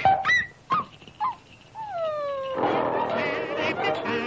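Cartoon soundtrack: a few sharp percussive hits and short squeaky glides, then one long falling tone. About two and a half seconds in, the orchestra comes in with a bouncy tune.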